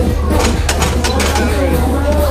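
Voices over loud background music with a steady low hum, and a few sharp clicks about half a second in.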